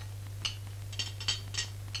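Several light clinks of china plates and cutlery being handled at a dinner table, spread through the two seconds, over a steady low hum.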